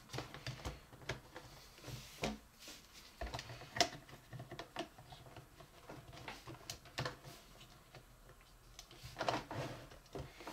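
Hard plastic toy pieces of a Potato Head clicking and tapping as they are handled and pushed into place: a scattering of light, irregular clicks, the sharpest about four seconds in.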